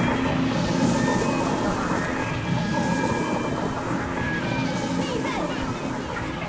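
Dense electronic noise and glitch music: a thick, crackling wash of noise with steady held tones running under it, loud and unbroken.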